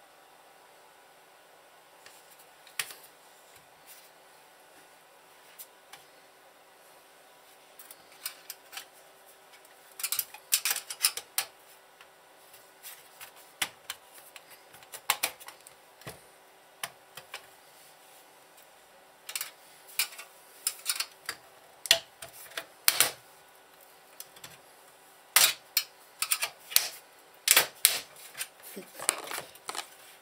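Screwdriver clicking, tapping and scraping against the sheet-metal case of a Sky+ HD satellite receiver while it is being pried apart: scattered sharp clicks at first, then irregular quick clusters of clicks from about eight seconds in.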